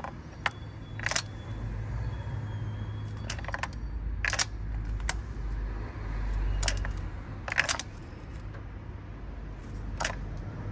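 Scattered metallic clinks of a socket wrench and extension as a spark plug is turned down onto a compressible copper washer, over a low steady rumble.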